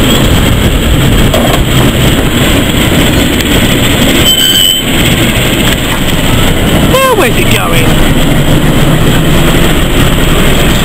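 Diesel shunting locomotive running as it moves slowly past at close range: a loud, steady engine rumble.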